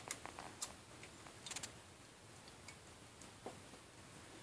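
A handful of faint, irregular small clicks as metal quick-connect wire terminals are handled and pushed onto the tabs of a replacement on/off switch.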